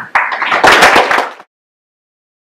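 Audience applauding, many hands clapping together, cut off abruptly about a second and a half in.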